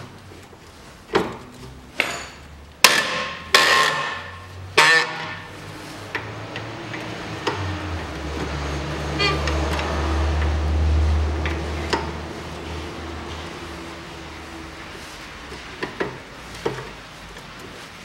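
Socket wrench on the 18 mm bolts clamping a Nissan Qashqai's front strut to the steering knuckle: five loud metallic clacks with ringing in the first five seconds as the wrench is worked, then quieter clicks and a quick run of ratchet-like ticks around the middle and near the end.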